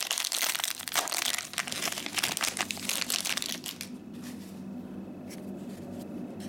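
A trading-card pack's foil wrapper being torn open and crinkled by hand: dense crackling for about four seconds, then quieter rustling with a few soft clicks.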